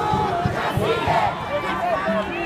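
Crowd of protest marchers shouting, many voices overlapping at once.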